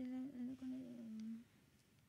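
A person's voice humming or holding drawn-out syllables on a few steady, level tones for about a second and a half, then dropping to quiet room tone.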